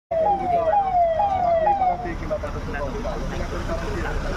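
A motorcade car's siren sounding quick falling sweeps, about two a second, that stop about two seconds in, over the steady rumble of the convoy's cars passing.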